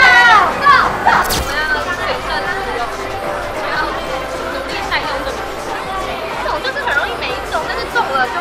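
Mostly speech: a group of young women's excited shouts and voices, loudest in the first second, then a woman talking.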